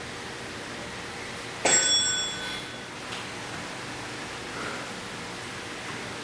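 A single bell ding about a second and a half in that rings on for about a second over a steady hiss. It is an interval-timer bell marking the switch to the next exercise set.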